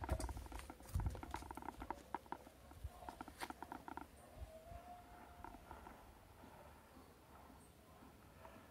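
Faint handling noises: light clicks, ticks and rattling, with a couple of low bumps early on, as a ceramic bonsai pot on a plastic turntable stand is turned. The clicks thin out after the first few seconds, and a faint brief whistle-like tone comes in the middle.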